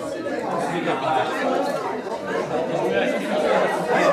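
Chatter of many people talking at once in pairs and small groups, their conversations overlapping into a steady hubbub.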